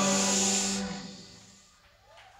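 A band's final sustained chord ringing out and fading away over about a second and a half, ending the song.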